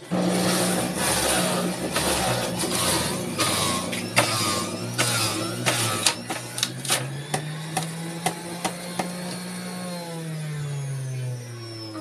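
A centrifugal juicer's motor switches on and runs with a steady whir and hiss while pineapple is pushed down the chute, with many sharp clicks and knocks as the pieces hit the spinning cutter. In the last couple of seconds the motor's pitch falls.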